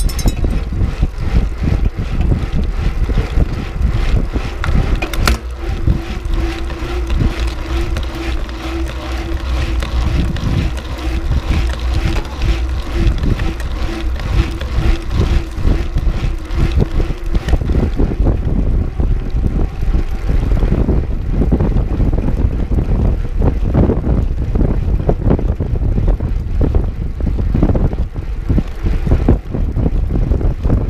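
Mountain bike rolling fast over a gravel fire-road, recorded on a GoPro Hero 5 Session action camera: wind buffeting the microphone, tyre noise and frequent rattles and knocks from the bike over rough ground. A steady hum joins in for about twelve seconds in the middle.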